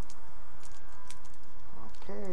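A few light metallic clicks and jingles from a pet leash and harness clasp being handled, over a steady low rumble; a voice starts right at the end.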